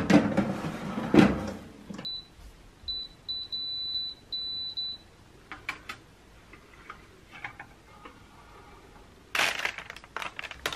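A metal baking tray clatters out of the oven and is set down with a thump, then an electronic oven beeps a string of short and longer high tones. Near the end, parchment paper rustles as it is lifted.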